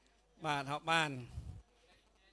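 A man's voice drawing out two words in a wavering, sing-song tone, about half a second to a second and a half in.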